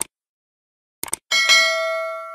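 Subscribe-button end-screen sound effects: a single click, then two quick clicks about a second in, followed by a bell chime that rings on and slowly fades.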